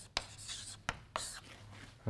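Chalk writing on a blackboard: a few sharp taps of the chalk against the board and short scratching strokes as a word is written and then underlined.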